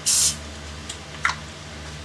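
A short hiss from an aerosol CA glue accelerator spray, lasting about a third of a second, over the steady hum of a room fan, with a couple of faint ticks about a second in.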